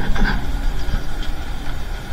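Low, steady rumble of road traffic and car engines running.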